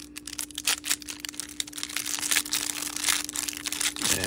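Clear plastic wrapper around a stack of trading cards crinkling and tearing as it is worked open by hand, a rapid run of crackles.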